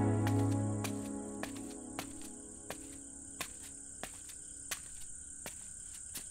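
Soft background music fading out over the first second or so, leaving a steady high cricket trill with a faint click about every two-thirds of a second.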